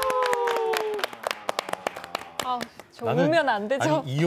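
Hand clapping from a few people, many quick irregular claps over the first three seconds, as the song's last held note dies away about a second in. A voice starts speaking near the end.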